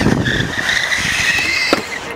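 A stunt scooter skidding on concrete: a high squeal that lasts about a second and a half and ends in a knock near the end.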